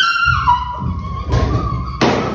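Two dull thumps about a second apart, under a continuous high-pitched wailing tone.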